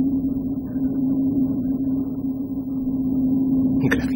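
Steady low mechanical hum with one held tone throughout: the background drone of a spaceship interior, a sound effect.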